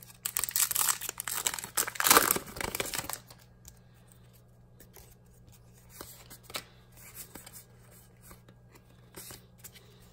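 A Pokémon Hidden Fates booster pack's foil wrapper being torn open and crinkled for about three seconds. Then only faint scattered clicks as the stack of cards is handled.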